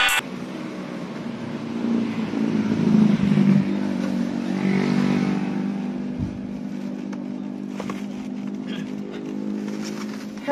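Motor vehicle engine running with a steady hum throughout, and louder swells about two to three and a half seconds in and again around five seconds, as of traffic on the road.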